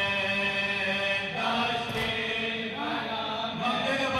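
Male voices chanting a noha, a Shia lament for Imam Hussain, through a microphone and PA. The lead reciters hold long notes, breaking into a new phrase about a second and a half in.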